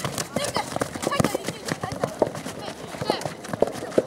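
Children's shouts during a youth football match, with irregular sharp knocks from players' running feet and ball touches on a dry grass pitch.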